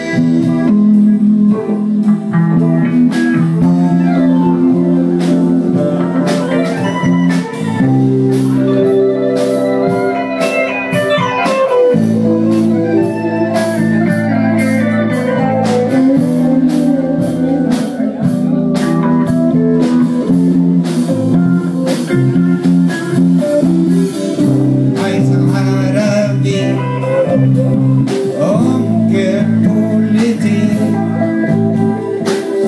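Live band playing: drums, bass, electric guitar and keyboard, with long held chords that change every few seconds under a steady drumbeat.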